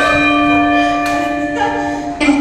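A bell chime struck once and ringing on for about two seconds as the music cuts off, a timer signal marking the end of a workout round.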